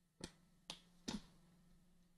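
Three quiet, sharp computer mouse clicks, the last a quick double, over a faint steady low hum.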